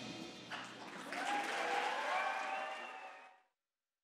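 Audience applause after the song's last notes fade, rising about half a second in, with a faint voice calling out within it. It cuts off abruptly after about three seconds.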